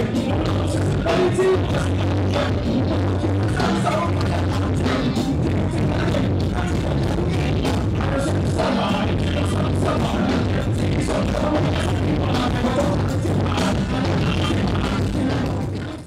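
Live hip hop music played loud through a concert PA, with a heavy, steady bass line; it fades out at the very end.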